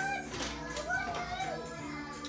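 A toddler babbling in wordless, high-pitched sounds that rise and fall, as if making toy cars talk to each other.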